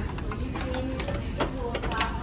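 Metal pots, pans and lids clinking and knocking against each other and the shelf as they are handled, several separate clacks.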